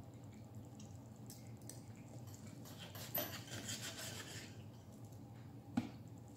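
Knife and fork cutting chicken on a plate: a faint sawing scrape of the knife in the middle, with a few light clicks of cutlery, the sharpest one near the end.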